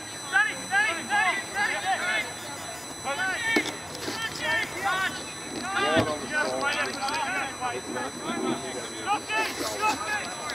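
Several voices shouting and calling out at a football match, words unclear, with one dull thump about six seconds in.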